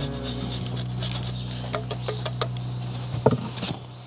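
Light, uneven scraping and ticking from a block of parmesan being grated on a flat hand grater, with one sharper click about three seconds in, all over a low steady hum.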